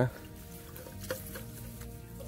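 Soft background music of steady held notes, with a few faint clicks around the middle, likely from handling the net trap and bottle in the water.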